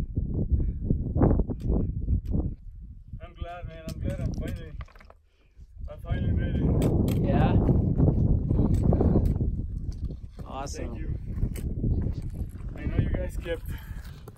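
People talking in short bursts, a few seconds in and again near the end. In between, loud low rumbling noise on the microphone, heaviest in the middle, with irregular low thumps at the start.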